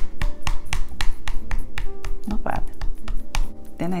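Plastic TV remote patting against the shoulder and upper back through a sweater: rapid, evenly spaced taps, about four to five a second, stopping near the end.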